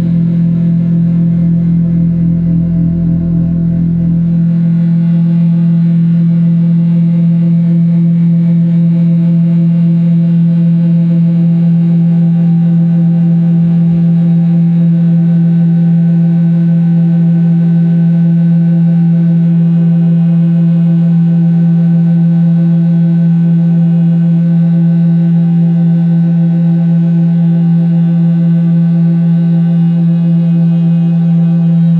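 Live drone music: one loud, sustained chord from keyboard and effects-processed electric guitar, held unchanging and thick with overtones. A deep rumble underneath drops away about four seconds in.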